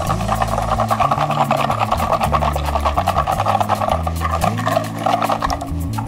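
Wire balloon whisk beating a runny egg-and-sugar mixture in a glass mixing bowl: rapid, steady strokes, the wires scraping and clicking against the glass.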